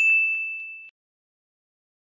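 Subscribe-button notification 'ding' sound effect: one bright chime, with a couple of faint clicks near its start, fading out within about a second.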